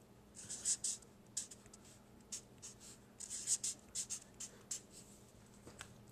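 Felt-tip marker writing on paper: a series of short, separate scratchy strokes as letters and symbols are drawn one by one.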